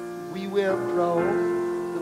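Piano playing sustained chords, with a man's singing voice entering about half a second in and sliding between notes.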